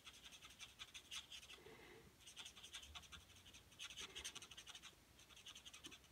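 Faint scratching of an alcohol-based felt marker tip (a light Stampin' Blends marker) stroking over cardstock in several short runs of quick strokes, blending colours on a coloured image.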